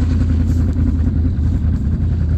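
Can-Am Renegade X mr 1000R ATV's V-twin engine idling steadily, a low even running sound with no revving.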